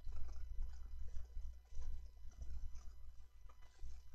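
Uneven low rumble on the microphone, with a few faint clicks of a computer mouse scattered through it.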